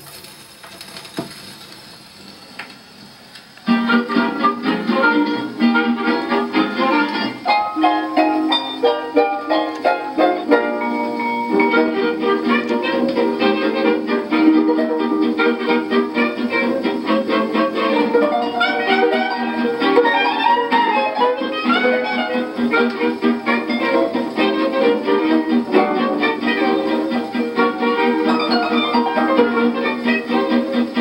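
An HMV 163 re-entrant acoustic gramophone playing a 78 rpm shellac record with a steel needle. For the first few seconds after the needle is set down there is only faint surface hiss and a click from the lead-in groove. About four seconds in, a 1930s harp-led dance band starts, heard through the gramophone's horn with its narrow, treble-cut acoustic sound.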